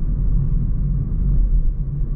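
Steady low rumble of road, tyre and engine noise heard inside the cabin of a Hyundai i30 Wagon while it is being driven.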